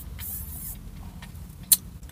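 A plastic straw being worked in the lid of a cup of iced coffee, giving a scratchy squeak early on, with a single sharp click near the end.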